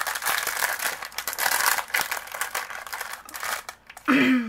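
Clear plastic packaging crinkling and rustling as hands handle it, with scattered light clicks. The sound thins out near the end.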